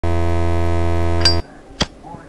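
A loud, steady low electrical buzz, a sound effect of the kind played over a TV colour-bar test card. It cuts off suddenly about one and a half seconds in, and a single sharp click follows.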